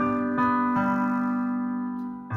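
Electronic keyboard playing slow, held chords in a piano voice. New notes are struck about half a second in, then ring on and slowly fade.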